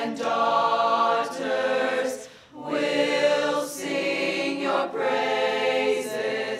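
Mixed choir of high-school boys and girls singing the school alma mater in harmony, with a short pause between phrases about two and a half seconds in.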